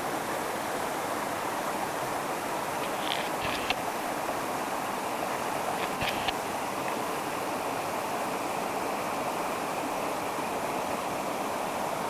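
Steady rush of a river flowing, an even noise with no let-up. Two short sharp sounds stand out over it, one about three and a half seconds in and one about six seconds in.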